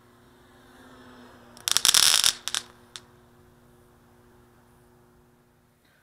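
A faint steady hum, then a short burst of rattling clatter about two seconds in, followed by a few single clicks.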